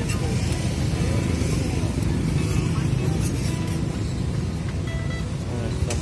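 Music playing over a steady low rumble of street noise.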